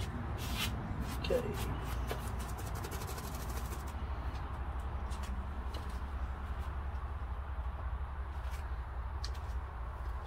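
Steady low rumble of outdoor background noise, with a few faint clicks and taps in the first few seconds.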